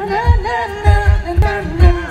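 An a cappella vocal group singing live through a PA system, several voices in harmony over deep beatboxed kick-drum beats, about two a second.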